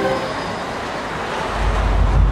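Music stops, and an even rushing noise takes its place. About one and a half seconds in, the low rumble of a moving bus's interior comes in.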